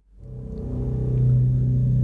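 A man humming one steady low note that swells in over the first second and then holds.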